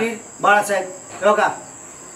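A man's voice speaking two short phrases, with a faint, steady, high-pitched whine underneath.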